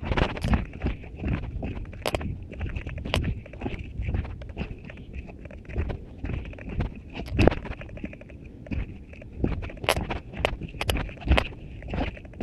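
Running footsteps thudding down steep railway-tie steps, an irregular run of knocks along with handling bumps of the handheld camera. The sound is muffled by a finger covering one of the microphones.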